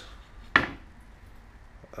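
A single sharp wooden knock about half a second in, as the stacked wooden clock-side blanks are set down against the workbench.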